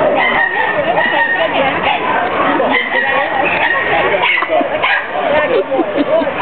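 Animal calls with wavering, pitched cries, mixed with people talking close by.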